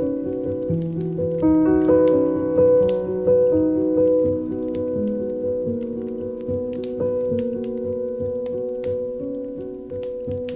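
Slow, soft piano music with overlapping held notes, layered with a patter of rain-like crackles.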